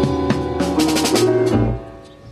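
Live jazz combo playing, with an upright double bass and a drum kit. A quick run of drum strokes comes in the middle, a low note follows, and the music drops away near the end.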